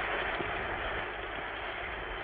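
Steady, even hiss of an old film soundtrack's background noise, with no music or speech.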